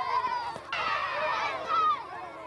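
Crowd of children shouting and calling out excitedly in high voices, many at once.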